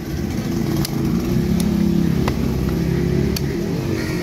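A motor vehicle's engine running close by, its low hum swelling in the middle and easing off. A few sharp chops of a cleaver on a wooden block fall over it.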